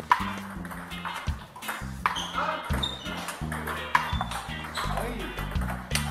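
Table tennis ball clicking sharply off paddles and table during a rally, about one hit every half second to second. A song with singing and a steady bass line plays underneath.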